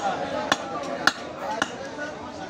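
Butcher's cleaver chopping into a beef leg on a wooden chopping block: four strikes about half a second apart, the third the loudest.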